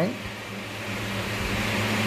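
Steady low hum in the room, with a pen scratching on paper as a word is written.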